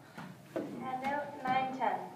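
A woman's voice speaking for about a second and a half, words not made out.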